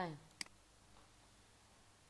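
A single sharp computer mouse click just after the tail of a spoken word, then quiet room tone.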